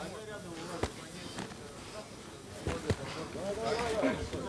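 Punches landing in ground-and-pound on the mat: a few separate thuds, one about a second in and two close together near three seconds, under background shouting.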